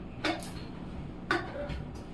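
Two short clinks of steel kitchen utensils being handled at the counter, a faint one just after the start and a sharper one just past halfway, over a low steady background hum.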